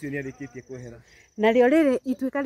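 A person talking, with an insect trilling steadily at a high pitch underneath; the voice drops out briefly a little past the middle and comes back louder near the end.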